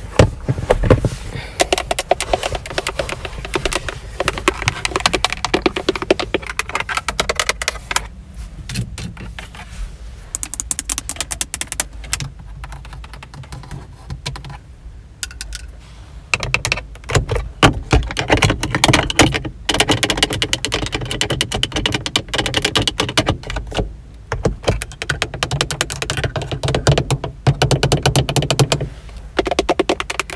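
Long fingernails tapping fast on a car's interior trim, a dense run of clicks that ends on the steering wheel. The tapping grows softer and sparser for several seconds in the middle.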